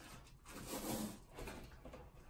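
Faint handling noises as a heavy locker is shifted by hand: soft scraping and knocking, a little louder about a second in.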